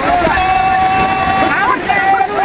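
Voices of the fishermen hauling the net calling out, one holding a single long high note for about a second before breaking off, over a steady wash of surf.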